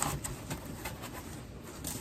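Faint rustling and a few light clicks of a cardboard box and its packing being handled and opened, over quiet outdoor background noise.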